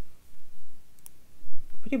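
Metal knitting needles clicking together as stitches are worked, with a few sharp clicks about a second in over soft yarn-handling noise.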